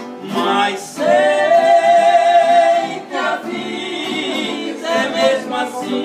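Two men singing a sertanejo song over two acoustic guitars. About a second in, the voices hold one long high note for nearly two seconds before the melody goes on.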